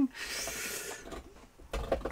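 Large dog gnawing on a bone, ripping it to shreds with a rasping, scraping noise that is loudest in the first second and fainter after.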